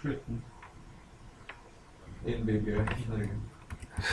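A man's low, drawn-out voice sound of about a second, midway, with a few sharp keyboard clicks near the end as code is being edited.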